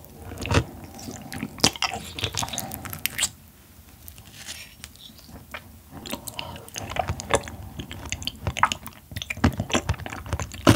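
A person biting and chewing soft yellow stingray liver close to the microphone, with wet clicking mouth sounds. A quieter pause comes a little past three seconds in, and the chewing picks up again about six seconds in.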